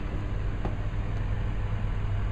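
Ford 6.7 L Power Stroke V8 turbo-diesel idling with a steady low hum.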